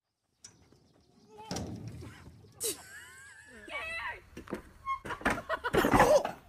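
About a second of silence, then a sharp knock and a person's voice crying out, with several more knocks near the end.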